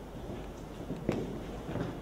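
Footsteps of people walking on a wooden floor: a few scattered steps over a low room hum, the sharpest about a second in.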